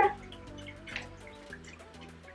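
Electric cat water fountain running: a low pump hum with a faint watery trickle, sounding odd. The owner takes the odd sound for the reservoir running low on water.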